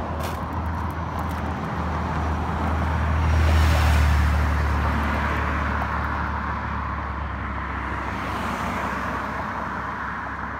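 Road traffic: a car passes with tyre noise, growing to its loudest about three and a half seconds in and then fading. A second, quieter swell follows near the end, over a steady low rumble.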